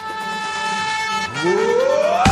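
A transition in a dance-music medley played over PA speakers: a held electronic tone, then, about a second and a half in, a smooth rising sweep that leads into the next track.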